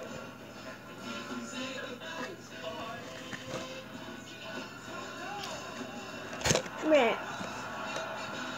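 Music and voices from a video playing in the room, heard faintly through a device speaker. A sharp knock about six and a half seconds in is followed by a short falling pitched sound.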